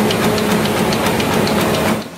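Printing press running: a loud mechanical clatter of rollers with a rhythmic click, about four a second, over a steady hum.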